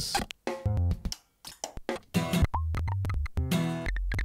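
Short slices of recorded music from a sound corpus played back one after another and cut off abruptly, with brief gaps between them: percussive hits and plucked tones first, then from about two seconds in a steady low bass tone with short synth blips that sweep up in pitch.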